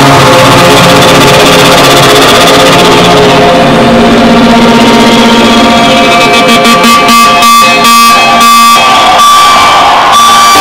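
Live band music played loud through an arena PA, heard from within the crowd on a phone recording at full level: sustained layered chords and tones. For a couple of seconds near the end the sound is chopped into rapid stutters several times a second, then returns in full.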